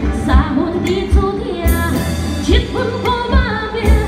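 A woman singing a Chinese song into a microphone with vibrato, backed by a live Chinese ensemble of bamboo flute, plucked lute and drums, over a regular low drum beat.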